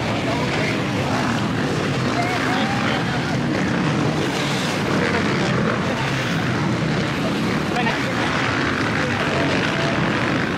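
Loud, steady outdoor stadium ambience: an even wash of noise with indistinct voices mixed in.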